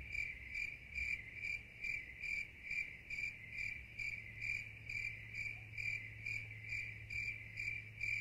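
An insect, typical of a cricket, chirping steadily at about two chirps a second over a low steady hum.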